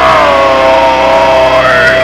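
Live metal band holding a loud sustained note on amplified instruments, the pitch sliding down at first and bending back up near the end, with no drum hits underneath.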